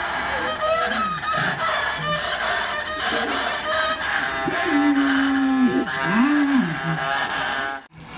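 A man imitating chickens with his voice: short clucking calls, then a long held call and a rising-and-falling crow like a rooster's, over the steady noise of a large crowd. The sound cuts off just before the end.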